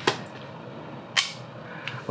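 Two sharp plastic clacks about a second apart, with a faint tick near the end, as 3.5-inch floppy disks are handled and picked up off a wooden desk.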